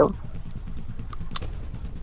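A low steady rumble of background noise on the phone-call audio, with a couple of faint clicks a little over a second in.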